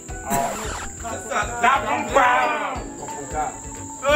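Several people chattering and exclaiming over background music, with a steady high-pitched chirring of crickets underneath.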